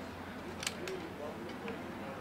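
Flintlock musket cocks being drawn back to half-cock at a drill command: two sharp metallic clicks close together, followed by a couple of fainter clicks.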